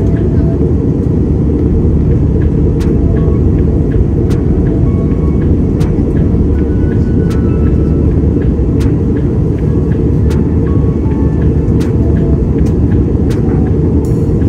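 A steady low rumble of airliner cabin noise in flight, under background music with short melody notes and a light tick recurring about every second and a half.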